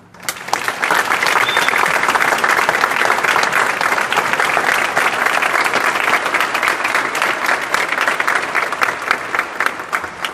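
Audience applauding a concert band, breaking out just after the music fades and thinning into scattered claps near the end.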